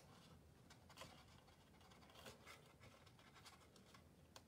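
Near silence with faint rustling and light ticks of paper being handled, as a designer-paper box tab is folded and pressed into place by hand.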